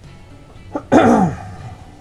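A man coughs once, a short harsh burst about a second in, over quiet background music.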